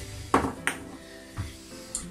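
Salt and pepper grinders knocked down onto a wooden bench, two sharp clicks about a third of a second apart with lighter taps after, over quiet background music.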